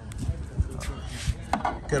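Handling noise: a run of small clicks, knocks and rubbing from the handheld phone being moved, with a man's voice starting near the end.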